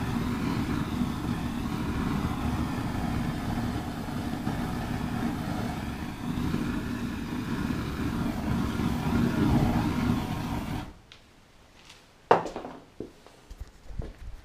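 Lynx aerosol deodorant sprayed through a flame as an improvised flamethrower: a steady rushing, hissing burn of the spray that cuts off suddenly after about eleven seconds, followed by a single knock and some handling noise.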